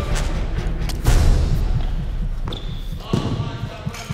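Lacrosse ball impacts in a large indoor hall: a sharp hit about a second in, then several lighter knocks.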